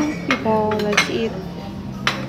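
China plates and metal cutlery clinking on a table, with about three sharp clinks, the loudest about a second in.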